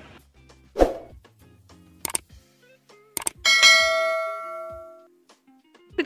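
A few clicks from a YouTube subscribe-button animation sound effect, then a bright bell ding that rings out and fades over about a second and a half. A single knock comes about a second in.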